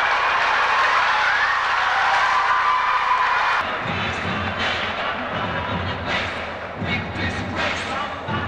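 Large arena crowd noise, a loud dense din of many voices, for about the first three and a half seconds. It then drops back, and repeated low thuds and sharp knocks come in under music, with basketballs bouncing on the hardwood court.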